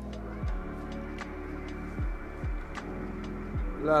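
Background music: sustained synth tones over a beat of deep, downward-sliding bass kicks and light ticks.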